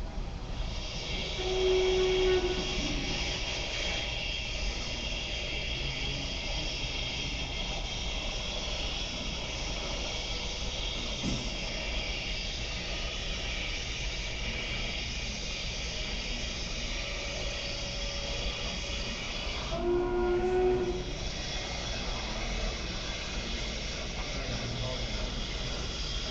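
Railroad train sound: a steady hiss, with a short horn-like blast about two seconds in and another about twenty seconds in.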